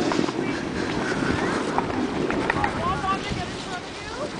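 Wind rumbling on the microphone, with scattered distant voices calling out, mostly in the second half.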